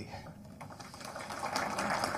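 Audience applause in a hall, starting softly about half a second in and building steadily.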